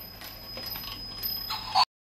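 Faint clicks and rattles of plastic toys being handled, over a faint high steady whine. A short louder sound comes near the end, and then the sound cuts off suddenly.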